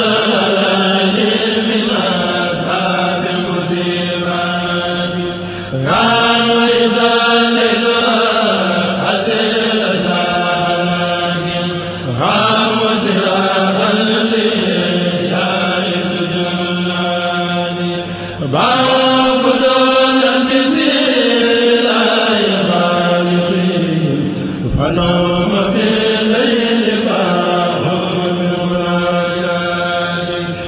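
Islamic devotional chanting, a religious poem sung in long phrases of about six seconds each, over a steady low hum.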